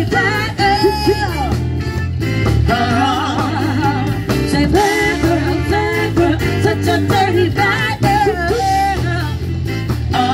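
Live band playing a song through a PA, with drum kit, keyboard, guitar and bass lines under a lead vocal melody that rises and falls in long phrases.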